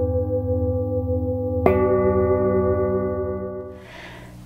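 Singing bowls ringing in long, steady overlapping tones. Another bowl is struck a little before two seconds in, adding a fresh set of tones, and the ringing fades out near the end.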